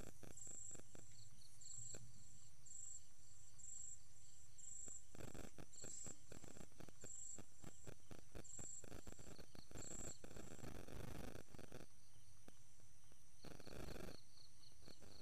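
Crickets chirping, a high-pitched pulse about once a second with fainter chirps beneath it. Bursts of rustling and handling noise come in about five seconds in and again around nine to eleven seconds.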